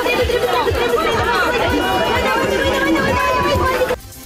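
Crowd of people chattering all at once over background music with a held note and a steady beat.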